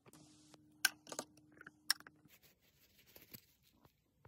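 A few sharp clicks and taps as small copper earring blanks are handled, over a steady low hum that stops about two seconds in.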